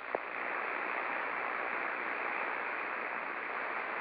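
Radio receiver hissing with steady static between transmissions, after a short blip as the last signal drops out. The static has the narrow sound of a radio's speaker.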